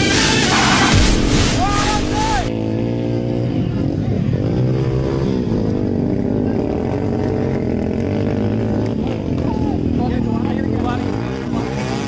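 Electronic music plays for the first couple of seconds. Then several racing dirt bike engines run and rev, their pitch rising and falling over and over as the bikes accelerate through a dusty turn.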